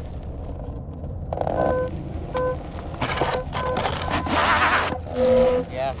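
Onewheel GT's hub motor straining on a standing-start climb up a steep dirt hill. From about a second and a half in there are short buzzing tones, then loud bursts of hiss as the tyre scrabbles and throws up dirt, over a steady low rumble.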